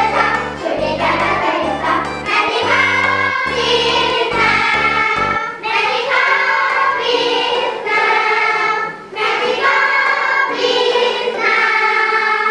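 A song sung by a choir of voices over a backing track; the bass line drops out about five seconds in, leaving the voices and higher accompaniment.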